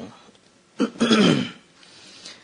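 A man clearing his throat once about a second in: a short catch followed by a louder, noisy clear lasting about half a second.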